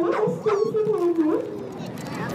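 A Tibetan mastiff whining: one long, wavering, high whine that slides gradually lower and stops about a second and a half in.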